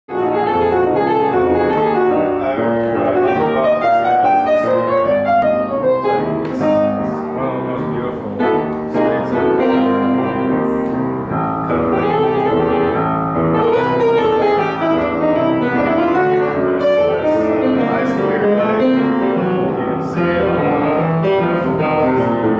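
Grand piano played solo: a steady, continuous run of notes and chords.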